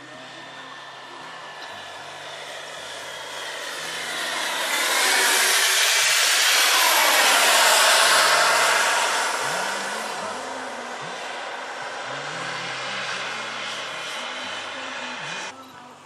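Model turbine jet engines of a large RC scale airliner flying past: a whining rush that swells to a peak a few seconds in, its pitch gliding down as the plane goes by, then fading. The sound cuts off suddenly just before the end.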